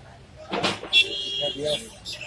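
Background voices, with a short, steady high-pitched tone about a second in.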